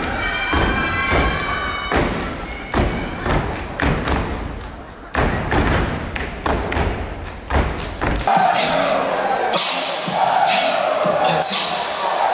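Step team performing over loud, bass-heavy music: a dense run of sharp stomps and claps. About eight seconds in, the beat and stomping cut off suddenly, leaving a mass of crowd voices in the hall.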